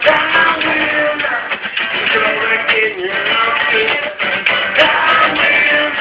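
Music: a man singing, with a strummed guitar.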